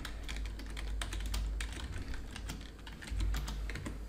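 Typing on a computer keyboard: an irregular run of quick key clicks as a short phrase is typed.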